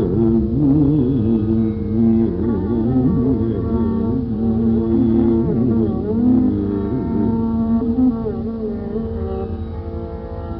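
Carnatic music in raga Begada: a melodic line with sliding, wavering ornaments moves over a steady drone.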